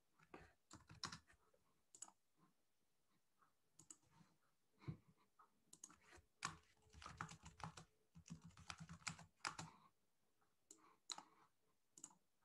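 Faint computer keyboard typing: scattered key clicks, with a denser run of keystrokes in the second half.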